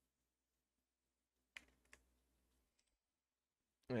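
Near silence, broken by two faint, short clicks about a second and a half in, a third of a second apart.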